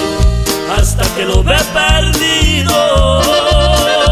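Norteño band playing an instrumental passage: an accordion melody over a steady bass beat, about two beats a second, with held accordion notes through the second half.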